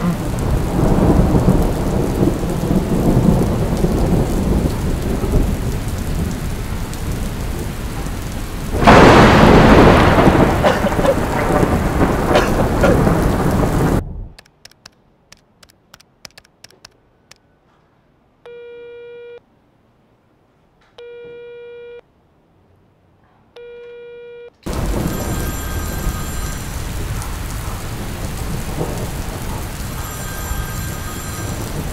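Steady rain with thunder, and a loud thunderclap about nine seconds in. About halfway through the rain cuts off to near silence: a few faint taps, then three short telephone tones, each under a second and about two and a half seconds apart. After them the rain starts again.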